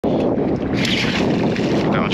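Steady wind rushing over the phone's microphone beside open seawater, a continuous even noise with no distinct events.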